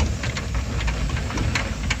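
Car engine running with low road rumble, heard from inside the cabin, with a few faint clicks.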